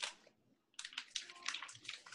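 Rushing water noise in choppy surges, starting about a second in after a short burst of noise at the very start, heard thin through a video-call microphone.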